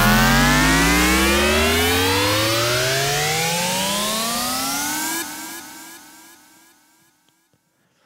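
Cinematic riser sound effect: layered tones gliding steadily upward in pitch under a bright hiss, gradually getting quieter, then dropping off sharply about five seconds in and fading out by about seven seconds.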